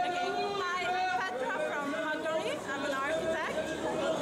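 Speech: a woman talking, with chatter behind it.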